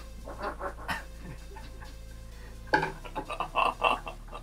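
Short, breathy vocal bursts from a person, in a cluster near the start and a louder cluster in the last second and a half, over a steady low hum.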